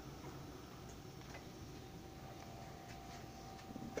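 A few faint clicks from the plastic electric fly zapper being handled, with a faint steady hum through most of it.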